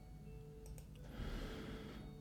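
Quiet room with a faint steady hum, a couple of soft computer-mouse clicks about two-thirds of a second in, and a brief soft hiss just past halfway.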